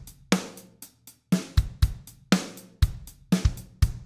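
A simple programmed drum-machine-style beat from Logic Pro's SoCal software drum kit, played dry with the Note Repeater switched off: kick, snare and hi-hat hits at an even pace of about two strikes a second.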